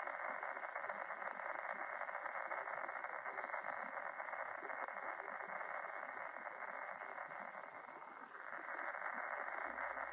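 Steady static hiss squeezed into a narrow midrange band, like a radio tuned between stations. It dips briefly near the end and comes back.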